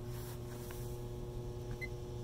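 A 110-volt plug-and-play hot tub's filter pump motor running with a steady electric hum.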